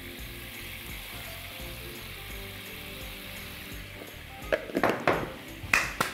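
Steady sizzle of food frying in a pan, with soft music underneath. A few sharp knocks near the end.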